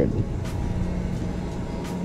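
Steady low background rumble with a faint hum and a couple of faint ticks.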